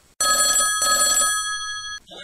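A telephone bell ringing once, in two quick pulses, its tone ringing on and then cutting off suddenly.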